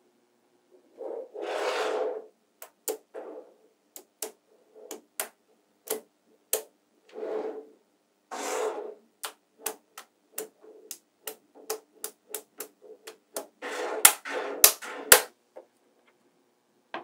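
Small magnetic balls clicking sharply as they snap together, with a few longer rattling, scraping stretches as clusters and sheets of balls are slid and flexed. The loudest clicks come in a quick run near the end.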